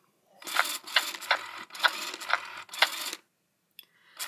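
A Baby Alive doll chewing on a feeding spoon: a rhythmic munching sound with crisp clicks about twice a second, starting about half a second in and stopping about three seconds in.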